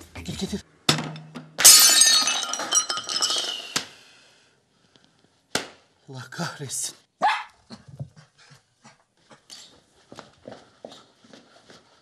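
A loud crash with a ringing tail about a second and a half in, then a small dog barking in scattered short barks.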